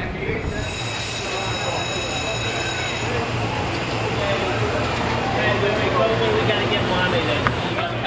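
A steady low hum with thin, high, squealing tones held over it, and indistinct voices in the background.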